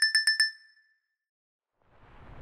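Edited-in sound effect: a fast run of short electronic beeps on one pitch, about nine a second, that dies away about half a second in. After a gap of near silence, a rising whoosh starts near the end.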